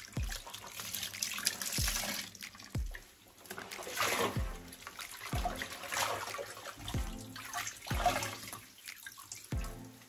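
Wet knitted clothes being squeezed and wrung out by hand in a bathtub, water splashing and dripping back into the tub. Background music with a deep, dropping bass beat about once a second runs under it.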